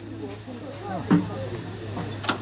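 Miniature-gauge steam locomotive hissing steam steadily as it stands on the turntable, with one short knock about a second in.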